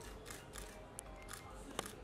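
A handful of camera shutter clicks, the loudest near the end, over faint background music.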